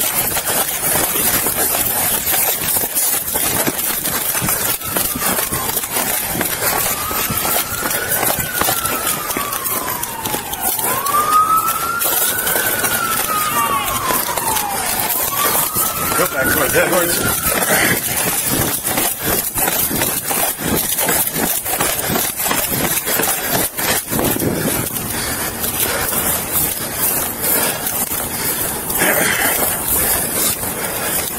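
A police siren wails in three slow rises and falls, from about seven to eighteen seconds in. It sounds over constant rustling and knocking from the body-worn camera as its wearer moves on foot.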